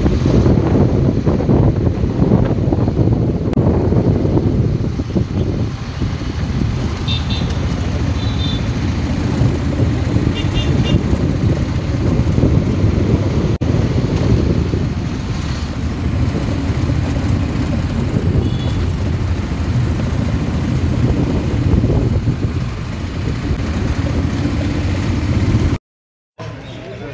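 Riding in an open-sided auto-rickshaw: its small engine runs steadily under a heavy rumble of road and wind noise. A few short, faint high-pitched beeps come about a third of the way in.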